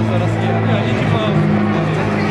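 Street sound: a steady low engine hum, as of a vehicle running close by, with passers-by's voices over it.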